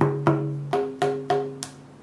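A tabla head tapped with the fingers about six times in quick succession. Each tap rings with a short, low, pitched drum tone, testing the pitch and tension of the freshly laced head while its camel-hide straps are still being tightened.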